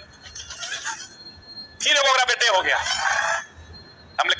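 A man's voice speaking in Hindi: a soft phrase near the start, then a louder, wavering stretch of voice in the second half.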